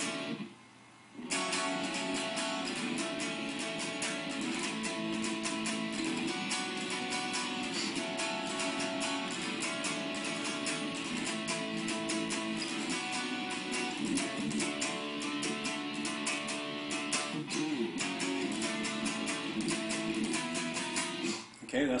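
Solo guitar strumming the chorus of a song in a steady rhythm, built around a slightly open chord. It starts about a second in, after a brief pause.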